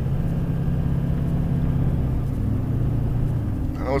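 Engine and tyre noise heard from inside a moving vehicle's cabin: a steady low engine drone over road rumble as it drives slowly along.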